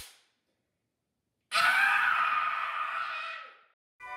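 A boy's loud scream begins about a second and a half in, holds for about two seconds and trails off. Just before it, right at the start, there is one sharp slap of his hands on his cheeks.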